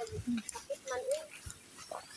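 A few short, quiet vocal sounds, one with a rising-and-falling pitch about a second in, with light scattered clicks.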